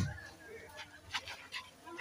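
A volleyball struck once with a sharp smack at the very start, followed by a few faint knocks, with a dog whimpering faintly in the background.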